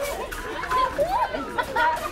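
Several people chattering and calling out at once, fairly high voices overlapping.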